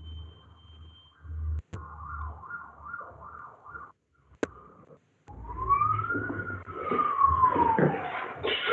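Background noise coming through an unmuted participant's microphone on a video call: a low hum and a brief high steady tone, two sharp clicks, then a siren-like wail that rises and falls over about three seconds in the second half.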